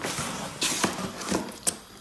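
A few short scrapes and knocks of a cardboard box being handled.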